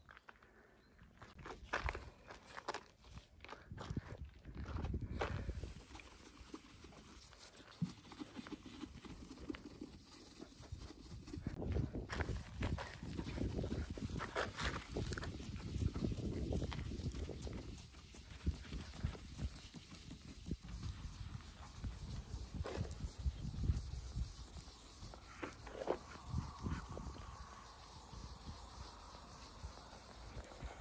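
A cloth and a foam pad rubbing over car paint by hand: irregular, soft swishing strokes. There are a few crunching footsteps on gravel in the first few seconds.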